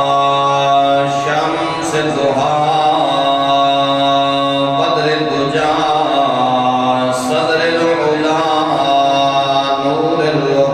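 A man's voice chanting in several long, drawn-out held notes that shift slowly in pitch, a melodic vocal lead-in rather than spoken words.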